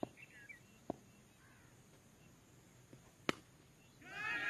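Faint bird chirps over a quiet outdoor background, broken by a few short sharp clicks or knocks; the loudest click comes near the end.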